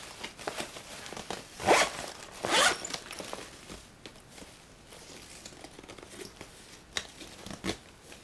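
Backpack zipper being pulled open along a pocket, two quick rasping zips about two seconds in, followed by softer fabric rustling and a couple of light clicks near the end.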